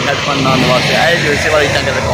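Men talking over a steady background noise of road traffic.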